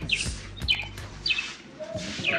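A small bird chirping in the background, three short high falling chirps about half a second apart, over a faint low steady hum.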